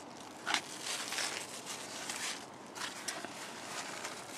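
Large zucchini leaves and stems rustling as a hand pushes through them, in a few short irregular rustles, the sharpest about half a second in.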